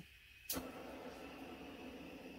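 A handheld blowtorch clicked alight about half a second in, then burning with a steady hiss.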